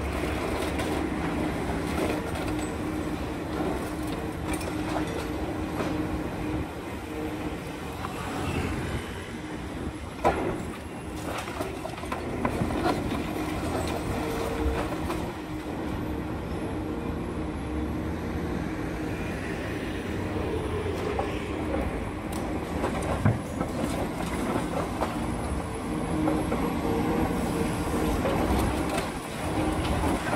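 Demolition excavator's diesel engine running steadily, with scattered clanks and crunches of concrete and metal as it breaks up the building; a sharp knock stands out about ten seconds in, and another a little after twenty.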